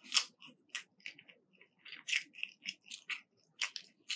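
Crispy breaded coating of a fried fish fillet crunching close to the microphone, in about ten irregular sharp crackles.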